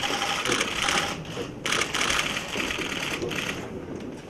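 Many camera shutters firing in rapid bursts, a dense clatter of clicks that stops and restarts in short gaps, over faint voices.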